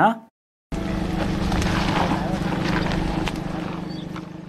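A motor running steadily with a low hum. It starts abruptly under a second in and fades away near the end, with faint voices underneath.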